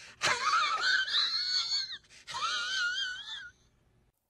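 A man's high-pitched, wavering whimpering wail, drawn out twice with a short break between.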